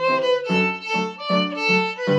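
Solo fiddle playing an Irish reel: a quick run of bowed notes, about four to a second, often sounding two strings together.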